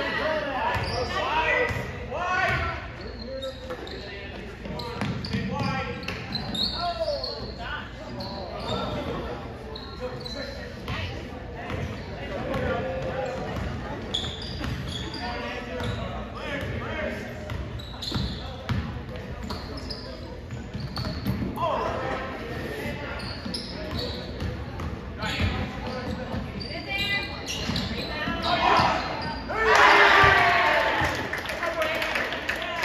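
A basketball being dribbled on a hardwood gym court, its bounces echoing in the large hall, amid the voices of players, coaches and spectators. The voices grow louder near the end.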